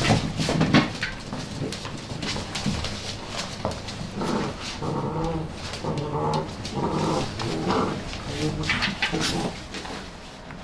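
Several puppies play-fighting: sharp yips near the start, then a run of short growling calls in the middle, with claws scrabbling and clicking on a hard floor throughout.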